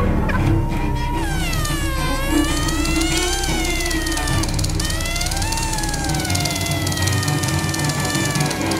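Contemporary chamber ensemble playing: swooping, siren-like pitch glides fall and rise in several voices at once, twice over, above a steady low held note.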